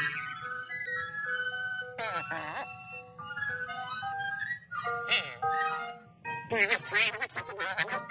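Cartoon soundtrack music playing held melodic notes, broken by three bursts of garbled, high-pitched cartoon character vocalising with a quavering pitch: about two seconds in, around five seconds, and just before the end.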